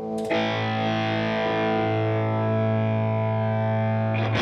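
Gibson Custom 1959 Les Paul Reissue electric guitar through an amplifier: a chord struck about a third of a second in and left to ring steadily, with new notes starting just after.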